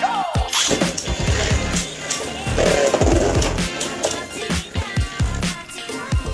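Two Beyblade Burst spinning tops launched into a plastic stadium, scraping and clattering against each other and the bowl in a run of sharp clicks, under background music.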